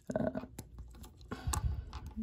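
Faint clicks and rubbing as a finger works the crown of a Seiko 6139 chronograph movement, set in a plastic movement holder, pressing it in to quick-set the date. One sharp click comes about one and a half seconds in. A short spoken 'uh' comes at the start.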